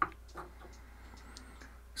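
Two light clicks about half a second apart, the first the sharper, then quiet room tone with a low steady hum.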